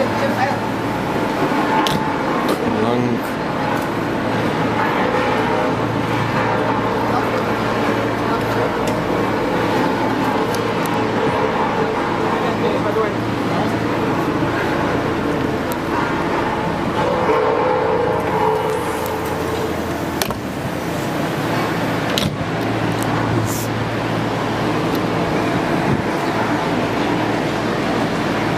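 Crowd of passengers talking indistinctly at once while luggage is loaded into a train, with a few short knocks and bumps from bags against the carriage steps.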